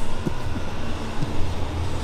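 Steady low rumble of a large drum fan running, with a few faint soft knocks.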